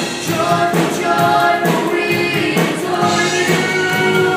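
Live youth worship band playing: voices singing held notes over electric guitars, bass and drums.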